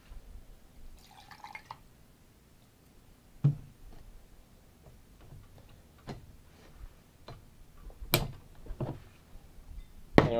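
Measured rum poured from a jigger into a glass of ice, a brief trickle about a second in, then scattered knocks and clinks of glass bottles and glassware handled on the bar top, the sharpest click about eight seconds in.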